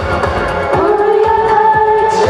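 Three women singing a dance-pop song together into microphones over amplified music with a steady beat.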